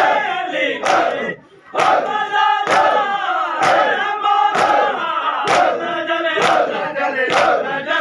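A group of men chanting a mourning lament in unison while beating their chests in matam, the hand slaps landing together about once a second between the chanted lines.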